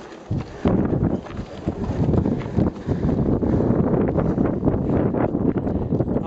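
Mountain wind buffeting the camera microphone in a loud, rough rumble that gusts up about a second in. Scattered short knocks of hikers' footsteps on rock come through it.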